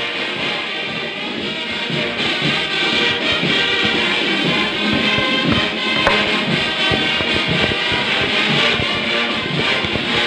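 A large brass band playing: sousaphones, trumpets, trombones and saxophones over a bass drum beating about twice a second.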